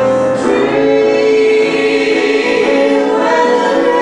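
Mixed female and male voices, three singers, singing together in harmony into handheld microphones and holding long notes, in a cabaret song.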